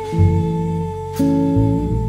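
Live jazz ballad: a female singer holds one long note over electric jazz guitar chords, double bass and drums. The bass and chords change about once a second, and a light cymbal or drum stroke comes just past the middle.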